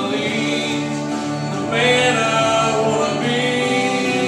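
A man singing a slow country ballad into a microphone, holding long notes over instrumental accompaniment.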